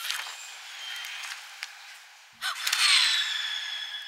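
Sound effects from an animated film's soundtrack: a steady hiss, then about two and a half seconds in a sharp whoosh with falling whistling tones that fade away.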